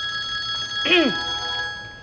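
Mobile phone ringtone sounding as a steady chiming tone, with a woman's short exclamation falling in pitch about a second in.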